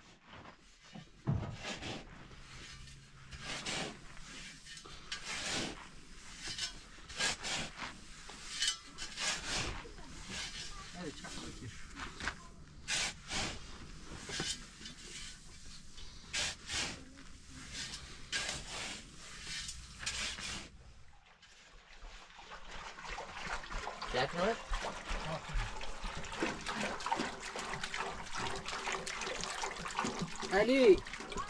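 A steel shovel scraping and scooping through chopped straw and dry soil in repeated uneven strokes, mixing the straw into the earth. About two-thirds of the way in it changes to water glugging and trickling as it is poured from a plastic jerrycan into a wheelbarrow of soil.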